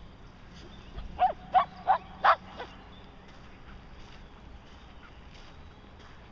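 A dog barking four times in quick succession about a second in.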